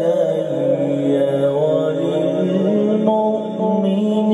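A man's voice in melodic Quranic recitation (tilawat), holding long, drawn-out notes that bend slowly up and down.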